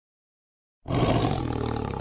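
Silence for nearly a second, then a tiger roar sound effect starts suddenly and carries on loud and rough to the end.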